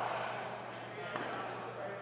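Knocks of a cricket ball in an echoing indoor net hall. The ring of a loud knock dies away over the first second, and a sharper single knock comes a little past halfway.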